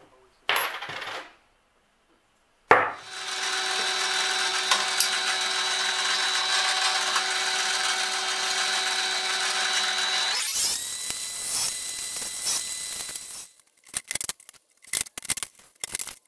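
A bench drill press switches on with a sharp click and runs at a steady pitch. About ten seconds in its sound changes and it winds down over the next few seconds. A string of light clicks and clatters of small parts follows near the end.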